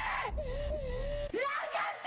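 A person's long, wavering, high wail in an exaggerated melodramatic style, held for about a second, then breaking into a rising cry and shouted words near the end.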